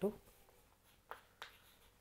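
Chalk writing on a blackboard: two short, faint strokes about a second in.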